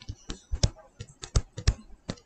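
Light, irregular clicks and taps of a digital pen stylus striking a writing surface while words are handwritten, about ten in two seconds.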